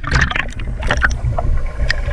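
Pool water sloshing and splashing against a camera held at the water's surface: a low, steady rumble with scattered splashes, most of them in the first second and one shortly before the camera goes under.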